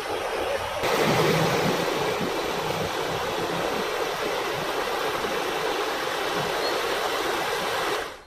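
Rushing floodwater of a river in spate: a steady, even rush of flowing water that grows a little louder about a second in.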